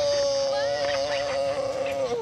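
Polystyrene (styrofoam) rubbing and squeaking in one long, steady, high-pitched squeal that stops right at the end.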